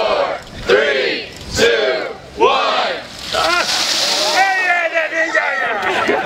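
Ice water sloshing and splashing out of large plastic cooler buckets onto two people, the splash loudest for about a second midway. Around it, people yell and whoop in short, repeated shouts.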